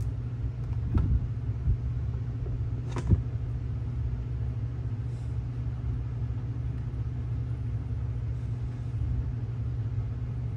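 A steady low rumble runs throughout, with a couple of short knocks, about one second and three seconds in.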